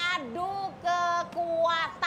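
A high-pitched voice singing a short phrase of held notes, about five notes in two seconds, some steady and some sliding down or up.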